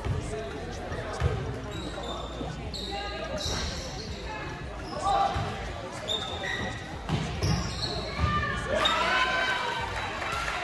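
A basketball being dribbled on a hardwood gym floor, with repeated thumps, while sneakers squeak in short high chirps. Voices shout, loudest about nine seconds in.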